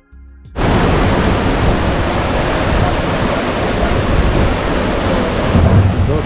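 After a brief tail of background music, a loud, steady rush of water starts suddenly. It is turbulent white water pouring down a concrete channel beside a large waterwheel.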